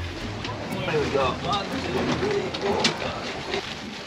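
Indistinct voices of people working on a boat deck, with sharp clicks and knocks of gear being handled and a low steady hum that fades in the first half.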